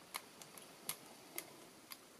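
A few faint, scattered light ticks as a hand presses down on the clear acrylic plate of a stamp positioner.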